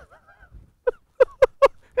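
A man laughing in short, rapid ha-ha bursts, about five a second, starting about a second in.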